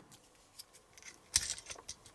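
Hard plastic parts of a transforming toy figure clicking and scraping as a small tool pries the foot out of the leg, with one sharp click about a second and a half in and a few lighter clicks after it.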